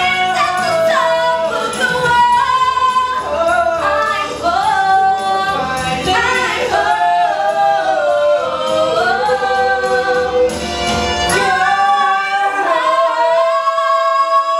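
A man and a woman singing a musical-theatre duet together with accompaniment. About eleven seconds in, the low accompaniment drops away and the voices hold long sustained notes.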